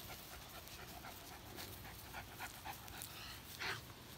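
A dog breathing in short, faint puffs close by, with a louder puff near the end.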